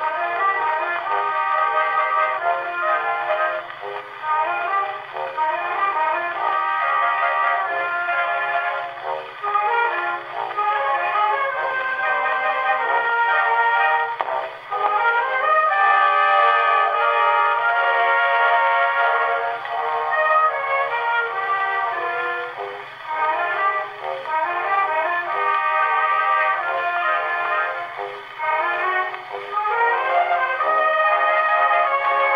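Orchestral waltz played from an early vertical-cut Pathé disc on a Pathé Tosca acoustic gramophone at about 90 rpm. The sound is thin and narrow-ranged, with no deep bass or high treble, as in an acoustic-era recording.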